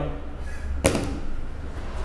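A single sharp tap about a second in, over a low steady hum.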